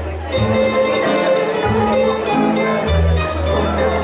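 Tamburica orchestra playing Croatian folk music from Bačka: small plucked tamburas carry the melody over guitar-like chord tamburas and a double bass. The sound drops briefly at the very start, then the ensemble comes back in.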